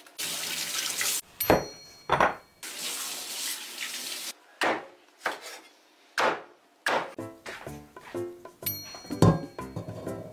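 Kitchen tap water running into a sink in two spells, with several sharp knocks between and after them, over background music.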